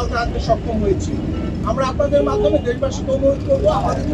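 A man speaking in Bengali into a bank of press microphones, over a steady low background rumble.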